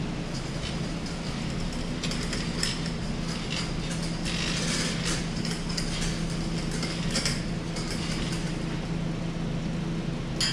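Eastwood hydraulic wheel dollies rolling on a concrete floor under a pushed car, their casters and frames clinking and rattling irregularly, busiest around the middle, over a steady low hum.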